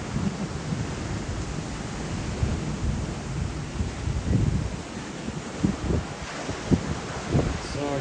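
Strong gusty wind buffeting the microphone, heard as a low, uneven rumbling rush with several sharper gusts in the second half.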